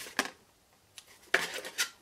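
Small metal scissors handled on a craft desk: a light click just after the start, then a louder metallic clatter and scrape about a second and a half in.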